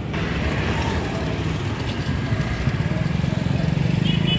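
A motor engine running with a low, pulsing rumble that grows louder towards the end, over faint crowd voices.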